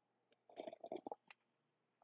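A narrator's faint mouth clicks and lip smacks: a quick run of small clicks about half a second in, and one more just after a second.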